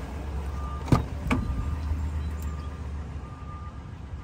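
A car door latch clicks sharply about a second in, with a second click just after, as the rear door of a 2023 Toyota 4Runner is opened. A faint beep repeats about once a second over a steady low hum.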